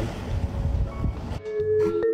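Wind rumbling on a phone microphone outdoors, which cuts off suddenly about two-thirds of the way through and gives way to steady, held music notes.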